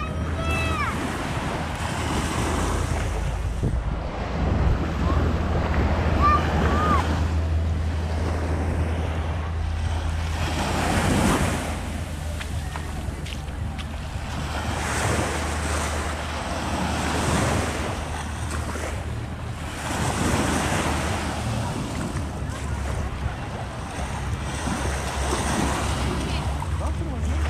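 Small waves washing up on a sandy shore, the surf swelling and falling back every few seconds, over a steady low wind rumble on the microphone. A few distant voices call out briefly near the start and about six seconds in.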